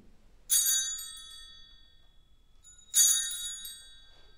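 Altar bells rung twice, about half a second in and again about three seconds in. Each ringing is a short jangle of bright high tones that rings on and fades, marking the elevation of the chalice at the consecration.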